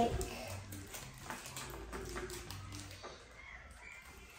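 Soft rustling and crinkling of a plastic bag and sticky tape being handled and folded, with faint voices in the background.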